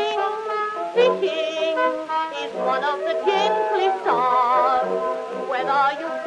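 Early Edison acoustic recording: the orchestra plays a song introduction, several instruments together with wavering vibrato on the top notes. The sound is thin and has no bass.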